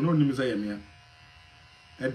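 A person talking for about the first second, then a pause filled by a faint, steady, low electrical buzz.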